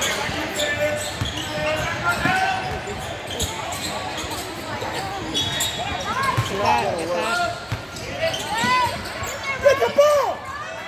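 A basketball bouncing on a hardwood court during a game, with a steady mix of spectators' and players' voices.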